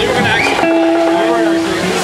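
Amplified electric guitar sliding up and down in pitch, then holding one long note for about a second.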